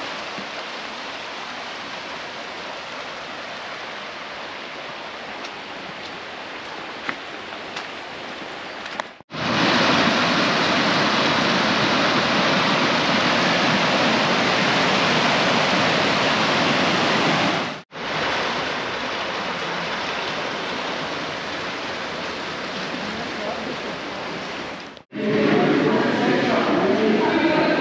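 Rushing water of a fast-flowing stream, a steady noise in several cut clips. It is loudest in the middle stretch, where the swollen stream tumbles over rapids in white water.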